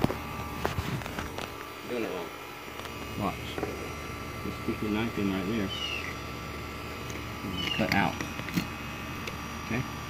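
A knife cutting through a small bluegill on a tabletop, with a few sharp taps, under several short voice-like calls.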